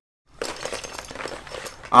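Crinkling and crackling of a stiff, coated dry bag being handled: a run of irregular small crackles lasting about a second and a half.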